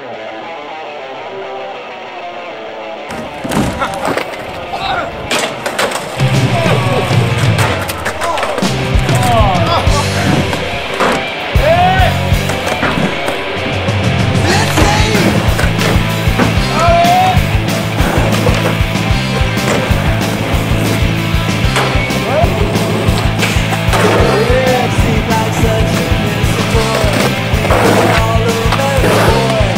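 Music with a steady, repeating bass line that comes in about six seconds in, mixed with skateboard sounds: urethane wheels rolling on concrete and sharp knocks of boards on tricks and landings.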